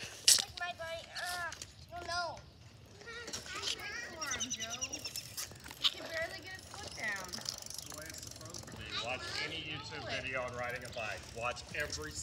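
Children's voices, high-pitched and indistinct, talking and calling out, with a sharp knock just after the start.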